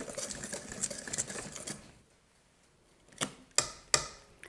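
A stand mixer's balloon whisk, worked by hand, stirring cake batter in a stainless steel bowl to mix in baking powder: a quick run of light clicks and scrapes of wire on metal that stops about two seconds in. A few sharp clicks follow near the end.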